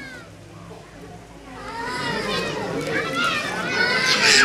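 Many children's voices overlapping at play, calling and shouting; fairly quiet at first, the noise swells about a second and a half in and is loudest near the end.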